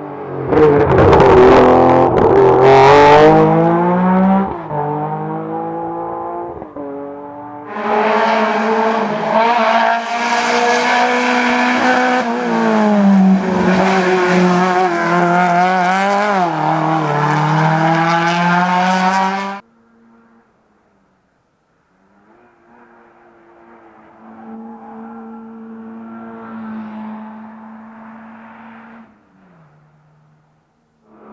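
Rally car engines revving hard through tight corners, the pitch climbing and dropping with throttle and gear changes. The loudest pass comes early, then a second long, loud run. The sound cuts off suddenly about two-thirds in, and a fainter car engine follows.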